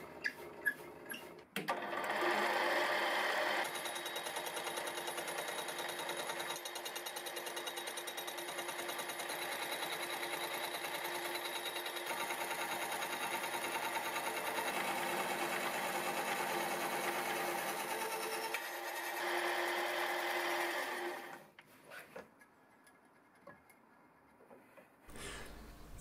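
Milling machine driving a slitting saw through the end of a thin-wall steel tube, cutting a slot: a steady, fast-pulsing cutting sound that starts about a second and a half in. It is louder at the start and again near the end, then stops about five seconds before the end.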